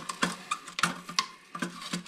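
Rubber toilet flapper and its chain being handled as the flapper is unhooked from the flush valve in the drained tank: a series of light, irregular clicks and taps.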